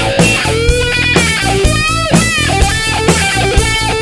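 Rock band playing a heavy metal song: distorted electric guitar over bass and drums, with a steady beat.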